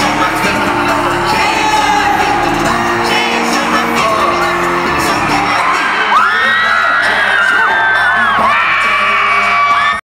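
Live pop music playing loud through an arena sound system, heard from among the crowd, with the audience whooping and singing along. In the second half, long high notes are held and slide in pitch over the music.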